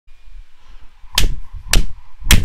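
Two sharp impacts, about half a second apart, the first about a second in.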